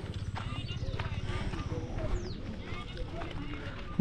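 Open-air street ambience on a dirt road: faint voices of people talking at a distance, with scattered light clicks and steps, and a brief high falling whistle about halfway through.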